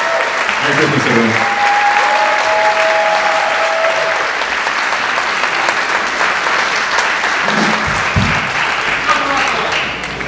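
An audience applauding steadily, easing off slightly toward the end, with a voice calling out over the clapping for a couple of seconds about one and a half seconds in.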